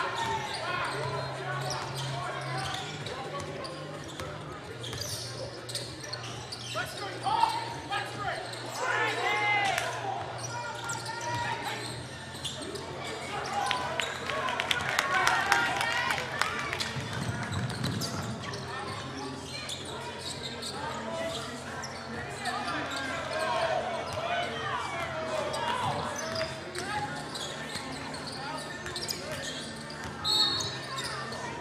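Live basketball play on a hardwood gym court: a basketball bouncing on the floor amid voices calling out from players and spectators, over a steady low hum.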